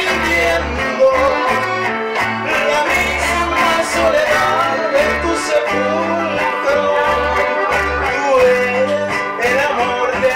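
A small band playing live: accordion, acoustic guitar and electric bass together, with the bass notes changing about every half second under the melody.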